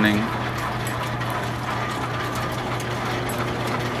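Overhead line shafts and flat-belt pulleys running steadily, a constant low hum with a whirring spread above it and faint scattered ticks from the belts and pulleys.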